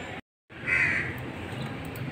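The audio drops out to silence for a moment. About half a second in, a bird gives a single call, heard over a steady low background hum.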